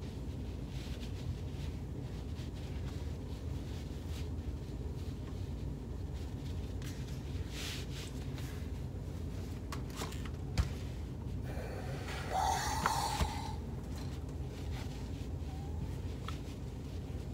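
Faint rustling and scratching of cotton fabric as fingertips roll and fold a seam allowance, over a steady low hum. A brief louder rustle comes about twelve seconds in.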